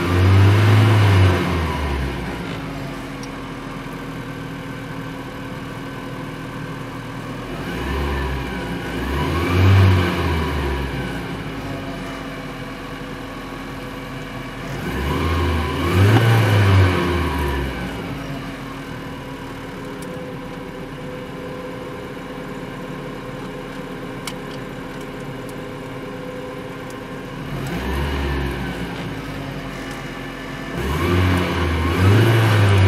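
2005 GAZ 31105 Volga's four-cylinder engine idling and blipped four times, at the start, about a third in, about halfway and near the end, each rev climbing to around 3,000–3,500 rpm and dropping back to idle. Heard from inside the cabin.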